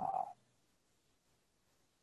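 A brief throaty vocal sound from a man, about a third of a second long, then silence.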